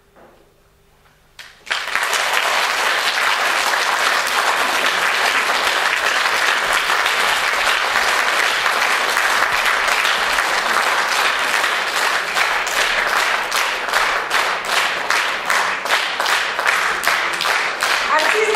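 Audience applauding. It starts suddenly about a second and a half in after a brief quiet, and individual claps stand out more clearly toward the end.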